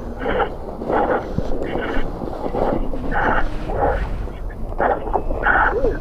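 A rider laughing in short breathy bursts, about one every 0.7 seconds, over a low wind rumble on the microphone.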